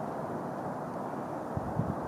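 Steady low outdoor background rumble with no distinct event, and a few faint low knocks near the end.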